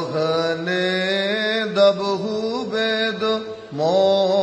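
A man's solo voice chanting a Syriac kukilion hymn in the Indian Orthodox liturgical style. He holds long notes that slide gently between pitches, takes a short breath near the end, and starts the next phrase.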